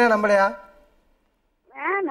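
Speech: a high-pitched voice talking for about half a second, then about a second of silence. A second, thinner-sounding voice starts near the end.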